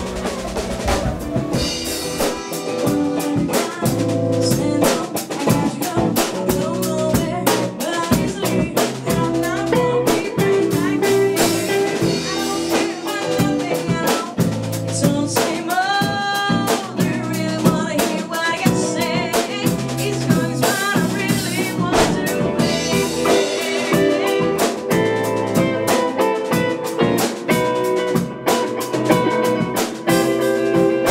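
A band playing with a drum kit keeping a steady beat of kick, snare and rimshots under a woman singing the lead melody.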